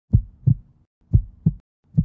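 Heartbeat sound effect: low double thumps, lub-dub, repeating about once a second.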